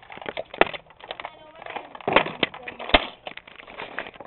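A string of sharp knocks and clicks from a Nerf foam-dart fight, the loudest about half a second in and three more between two and three seconds in, with faint voices underneath.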